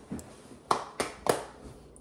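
Three quick, sharp taps about a third of a second apart, from a plastic measuring cup knocked against a stainless steel mixing bowl to shake out the flour.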